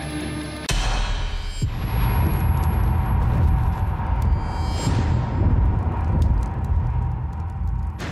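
Film score and sound design: a held, sustained chord gives way less than a second in to a sudden heavy low boom. A dense, deep rumble follows and holds under the title card, growing louder around two seconds in.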